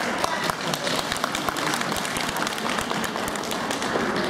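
An audience applauding, many hands clapping, with crowd voices mixed in.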